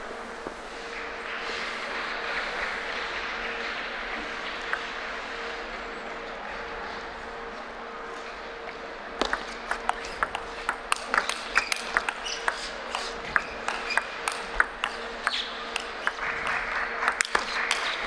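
A table tennis rally: the celluloid ball clicks sharply and irregularly off the rackets and table for about eight seconds, starting about halfway through. Before that there is only the low murmur of a large hall with a faint steady hum.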